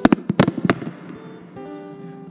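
About six sharp hand claps close to the microphone in quick succession, then acoustic guitar notes ringing on.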